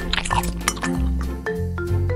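Small utensil clinking against a tiny glass bowl as a mixture is stirred, a few light clinks in the first half, over background music with a steady beat.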